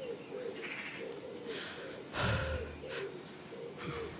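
A quiet pause in which a person gives one short breathy exhale, like a sigh, about two seconds in, over faint low warbling sounds in the background.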